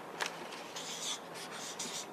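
Pens scratching on small notepads as several people write at once, in a few short strokes.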